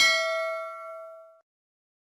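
Notification-bell chime sound effect from a subscribe-button animation: a single bright ding that rings on and fades away by about a second and a half in.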